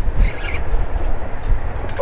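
Strong wind buffeting the microphone, a loud, steady low rumble.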